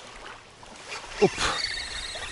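Wind-ruffled water lapping at the shore, then, about a second in, a short exclamation and a steady whir from a spinning reel being cranked as a fish takes the lure.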